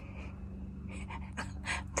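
A person's faint breathing in a pause between words, with a few light clicks and a steady low hum underneath.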